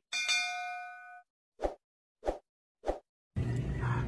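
Notification-bell "ding" sound effect of a subscribe-button animation, a bright ringing chime that fades over about a second, followed by three short pops at even spacing.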